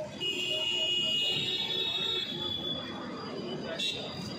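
A high-pitched steady whine, held for about two seconds from just after the start, over background voices; a short click near the end.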